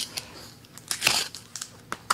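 Cardboard shipping box being opened by hand, its flaps and packing tape giving a few short crackling scrapes, strongest about a second in, with a sharp click near the end.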